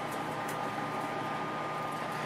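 Steady indoor room noise: an even low hiss with a faint, thin steady whine that fades out near the end.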